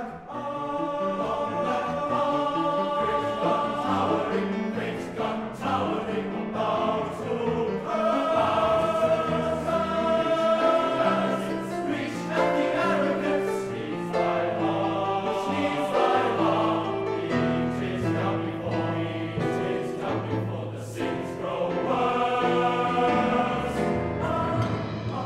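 Boys' choir singing in parts, with deep voices under higher ones, holding chords that move on every second or so.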